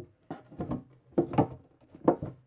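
Wooden drawer box scraping and knocking against a wooden bench top as it is turned around, in a few short bursts.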